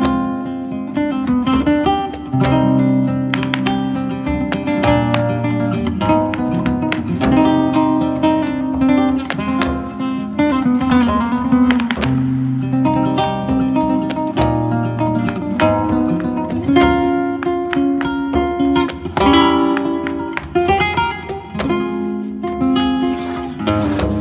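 Instrumental flamenco music in the farruca style, led by Spanish guitar with quick, sharply attacked notes over held low notes.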